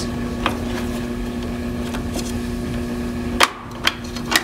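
Clicks and knocks from the seed disc of a John Deere MaxEmerge vacuum seed meter being handled: one faint click about half a second in, then a loud sharp click near the end and a smaller one right after. A steady low hum runs underneath and drops out at the loud click.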